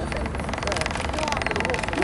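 A motor engine running with a fast, even pulse that starts just after the opening, over faint voices.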